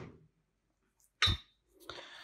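A single short knock with a faint metallic ring about a second in, as a hand tool is handled on a sheet-metal worktop. Near the end a soft rustle of handling starts.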